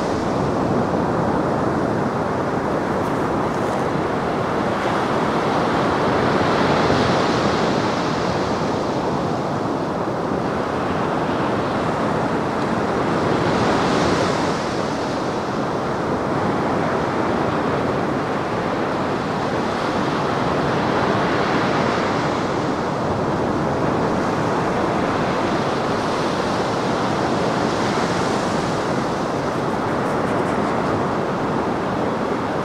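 Black Sea surf breaking on the shore: a steady wash of waves that swells every six or seven seconds as each breaker comes in.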